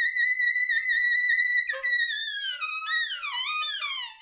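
Solo soprano saxophone holding a long, very high note that wavers slightly, then breaking off into a run of falling, sliding bends that step down in pitch.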